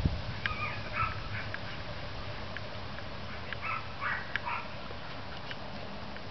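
Belgian Malinois giving high, whining yips in two short bouts, about half a second in and again around four seconds in, with a few faint sharp clicks between.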